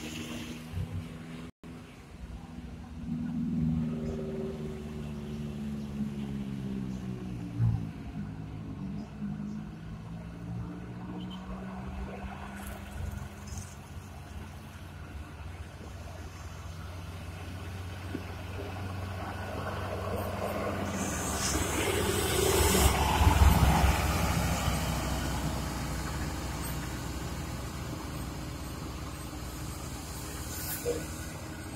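Bus diesel engines: one revs up and down over the first several seconds, then a bus comes close, loudest a little past the middle, with a brief hiss of compressed air from its brakes.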